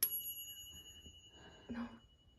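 A single bright chime strikes at the start, its several high ringing tones fading over about a second and a half.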